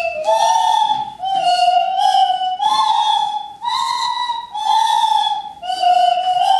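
Several children's homemade horn pipes played together in unison: high, whistle-like held notes, each about a second long, stepping up and down in a simple tune with short breath breaks between them.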